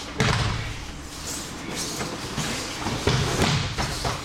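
Thrown aikido partners landing on the dojo mats in breakfalls: one loud thud just after the start and several more near the end.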